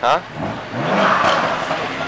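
A car engine revving hard, rising in pitch from about half a second in and staying loud, with a rushing exhaust note, until near the end.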